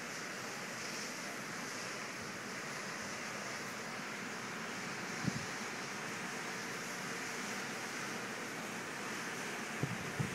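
Steady wash of storm surf breaking on the shore, mixed with wind. A brief low bump about five seconds in.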